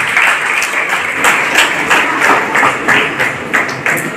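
Audience applauding in a hall: many hands clapping at once, with single sharp claps standing out from the mass.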